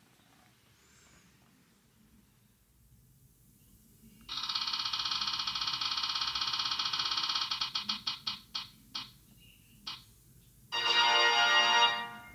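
Phone app's spinning-wheel sound effect: a rapid run of ticks starts about four seconds in, slows into separate clicks and stops as the wheel comes to rest, then a short chime sounds near the end as the result comes up.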